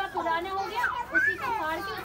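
Speech: people talking, with children's voices among them.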